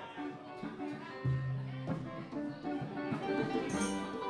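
Live band playing, led by electric guitars with keyboard; a low bass note comes in about a second in and the music grows louder.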